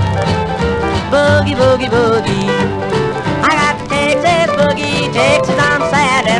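A late-1940s/early-1950s country boogie record from a Capitol 78 rpm disc, with the band playing a steady boogie beat under wavering lead lines.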